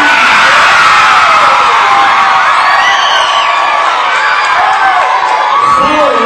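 A large crowd of children cheering and shouting, many high voices at once, loud and sustained.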